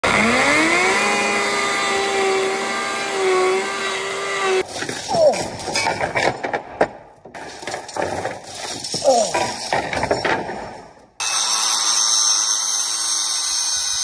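A cordless drill spins up with a rising whine and runs steadily for about four seconds. Then comes a few seconds of knocking and rattling, and for the last three seconds an angle grinder cuts through steel chain with a steady high whine.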